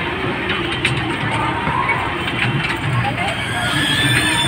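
Busy fairground ride sound: people's voices and a small electric kiddie train running on its circular track with a mechanical rattle, over music with a steady low beat about twice a second.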